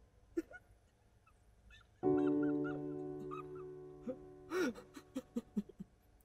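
A man sobbing and whimpering, with a loud falling cry past the middle followed by a run of short catching breaths. A sustained piano-like chord from the film score sounds about two seconds in and slowly fades.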